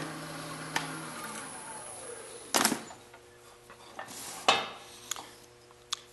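Wood lathe switched off and spinning down, its hum falling in pitch and fading over the first couple of seconds. Then come a few sharp metallic clanks and rattles as the steel tool rest and tools are handled.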